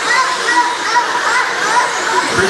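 Several radio-controlled race cars whining as they circle a dirt oval, their pitch rising and falling as the drivers throttle up on the straights and off into the turns.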